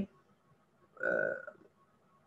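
A single short vocal noise from the lecturer, not a word, about a second in and lasting about half a second. It is a burp-like or throat sound in an otherwise near-silent pause.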